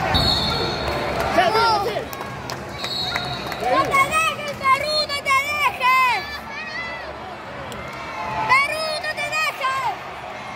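Spectators and coaches shouting short, drawn-out calls of encouragement at the wrestlers in an echoing arena, in two clusters in the middle and near the end. A dull thump comes right at the start, and a brief high steady tone sounds twice in the first three seconds.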